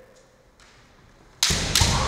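A kendo exchange: two sharp cracks of bamboo shinai strikes together with the stamp of bare feet on the wooden floor, about a third of a second apart near the end, ringing on in the hall afterwards.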